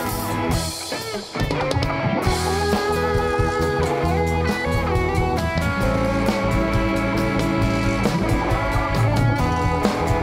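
Live rock band playing an instrumental passage with electric and acoustic guitars, bass guitar and drum kit. The sound thins out briefly about a second in, then the full band comes back in.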